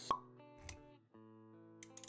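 Intro-animation sound effects over soft background music with sustained notes: a sharp pop about a tenth of a second in, then a lower thump, and the music drops out for a moment about a second in before resuming.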